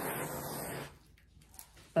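Handheld heat gun blowing a steady rush of air, used over wet acrylic pour paint to pop surface bubbles; it is switched off suddenly about a second in, and a few faint clicks follow.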